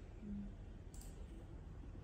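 Quiet room noise with a brief low hum just after the start and a single light click about a second in.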